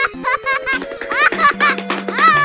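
High-pitched cartoon baby giggling in a quick run of short, rising bursts, over light background music.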